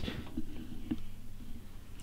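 A few faint, small clicks of a plastic filler cap and dipstick being handled at a motorcycle's two-stroke oil tank, over a low steady hum.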